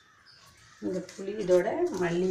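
A person's voice starting just under a second in, a drawn-out vocal sound that bends slightly in pitch and is still going at the end.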